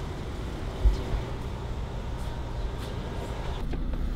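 Steady low rumble of a vehicle engine running, with a single low thump about a second in.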